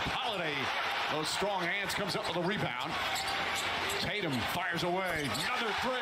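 Television broadcast sound of a basketball game: a basketball being dribbled on the hardwood court amid arena crowd noise, under a commentator's play-by-play.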